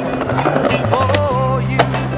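Skateboard wheels rolling on stone paving, with one sharp clack of the board near the end, under a song with a wavering melody and steady bass.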